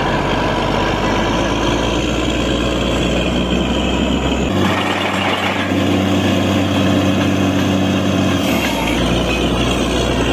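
Diesel engine of a truck-mounted borewell drilling rig running hard, with a steady drone. About halfway in its note changes for roughly four seconds, then settles back.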